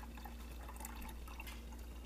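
Water pouring from a glass measuring cup into a plastic gallon milk jug: a faint, steady trickle with small drips and splashes inside the jug.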